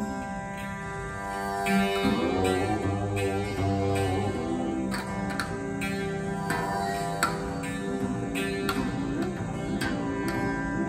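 Rudra veena playing Raag Abhogi over a steady tanpura drone: long sliding pitch glides about two to four seconds in, then a run of separate plucked notes.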